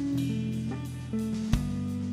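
Live band of electric guitar, electric bass and drum kit playing, with held guitar and bass notes changing pitch every half second or so and one sharp drum hit about one and a half seconds in.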